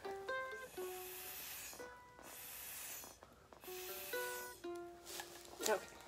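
Breath blown hard through a plastic drinking straw to push wet acrylic paint across the canvas: two long airy hisses, the second starting about two seconds in. Plucked ukulele background music plays throughout.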